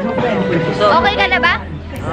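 Speech over background music.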